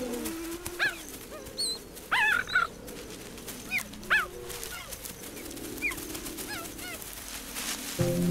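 Cheetahs chirping: short, high, yelping calls that each rise and fall in pitch, coming singly or in quick clusters every second or so, over a faint low hum.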